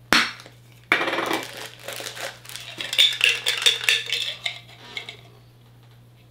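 A Funko Soda tin can being opened by hand: a sharp snap as the ring pull is lifted, then a scraping tear as the metal lid comes off, followed by several seconds of irregular metallic clinking and rattling that stops about five seconds in.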